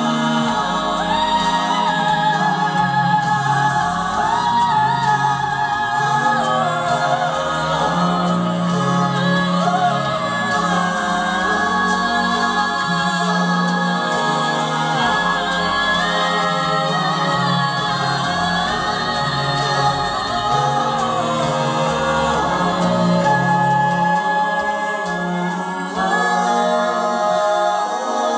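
Mixed male and female a cappella vocal ensemble singing in close harmony into microphones, sustained chords moving over a stepping low bass line.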